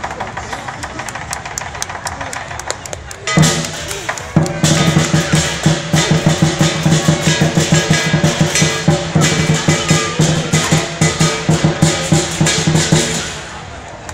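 Lion dance percussion, a big drum with clashing cymbals: a lighter beat at first, then about three seconds in a loud crash starts fast, loud drumming that stops shortly before the end.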